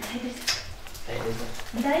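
People talking in a small room; a voice says "Daj" near the end.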